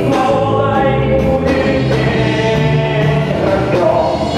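Live band playing: a male lead singer holds long sung notes over guitar and drums.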